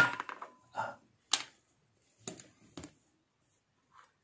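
Four short handling clicks and knocks, the second the sharpest, as a 200-watt light bulb and its leads are picked up and set in place on the inverter to be connected as a test load.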